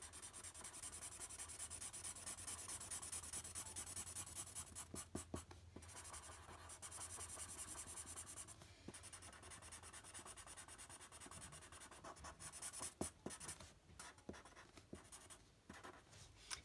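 Black felt-tip marker scribbling on paper, filling in a solid black area with rapid faint scratchy strokes.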